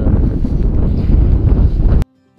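Strong wind buffeting the microphone, a loud low rumble with no pitch to it.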